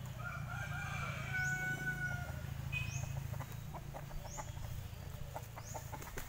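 A rooster crowing once, a long call lasting about two seconds near the start, followed by chickens clucking in short sharp notes.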